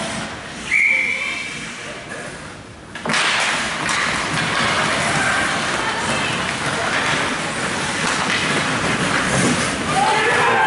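A short referee's whistle blast about a second in. From about three seconds in comes a steady wash of rink noise: skates on the ice and spectators' voices.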